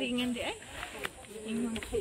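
People's voices, talking in short, broken snatches that cannot be made out.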